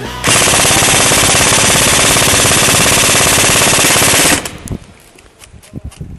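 Airsoft AK-pattern rifle firing one long full-auto burst, a fast even rattle lasting about four seconds, very loud close to the microphone. It stops abruptly, leaving softer scattered clicks and knocks.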